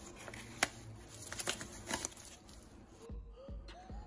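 Faint crinkling and clicking of a vacuum-sealed plastic paydirt bag being handled, with one sharper click about half a second in. About three seconds in the sound changes abruptly to a low rumble with short rising tones: a glitch-style video transition effect.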